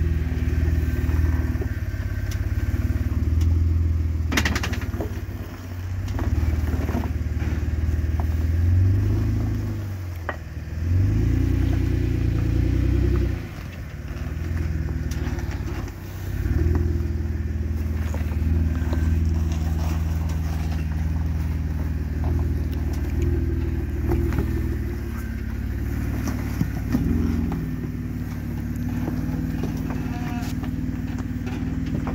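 Jeep engine crawling at low speed over rock, its revs swelling and easing again and again. There are occasional knocks and scrapes, the sharpest about four seconds in.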